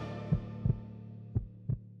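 The end of the title-sequence music: a low sustained hum fading away, with two heartbeat-like double thumps, a pair near the start and a pair near the end.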